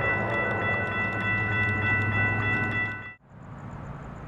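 Train air horn sounding one long, loud chord of several steady notes over the low running of a locomotive, with a rapid ticking of grade-crossing bells; it all cuts off abruptly about three seconds in.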